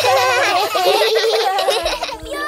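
Several children's voices laughing together, with the music stopped.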